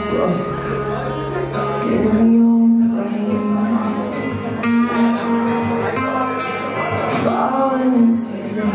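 A live band playing a song, with electric guitar and bass.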